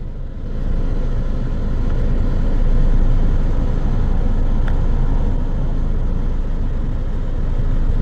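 Road and engine noise of a moving car, heard from inside its cabin: a steady low rumble that grows louder about half a second in and then holds.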